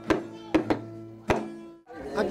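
Music for the São Gonçalo folk dance: held notes under sharp, irregular knocks. It cuts off suddenly just before the end.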